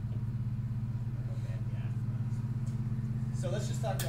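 A steady low hum with a fast, even pulse, and faint voices near the end.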